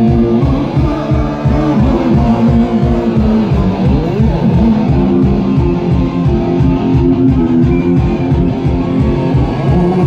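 Live Breton punk band playing: electric guitar and bass over a fast, steady beat of about four pulses a second.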